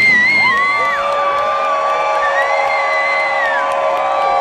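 Concert crowd cheering and whooping just after a rock band's final hit, with long high sustained and wavering tones ringing over the noise.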